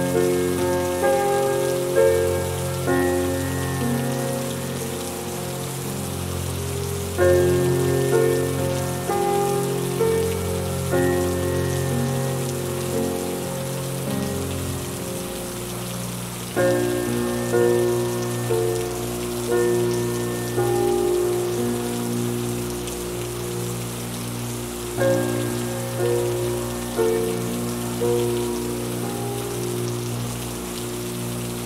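Steady rainfall hiss under a slow, calm piano piece, its notes struck and left to fade in phrases that begin again every eight or nine seconds.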